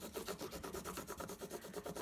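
Coloured pencil scratching quickly back and forth across thin paper in an even run of short strokes, pressed hard to bring up a rubbing of the patterned tape underneath.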